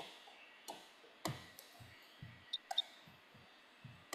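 A few faint, scattered clicks and taps, about seven in all, over quiet room tone.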